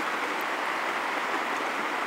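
Heavy rain falling steadily: an even hiss.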